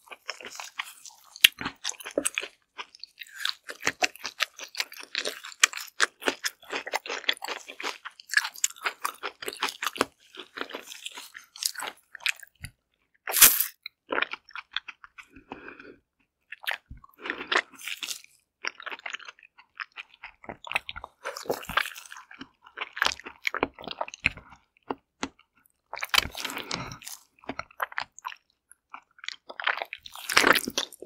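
Close-miked biting and chewing of a whole steamed Korean zucchini: moist clicks and crunches in bursts with short pauses, with one loud bite about halfway through.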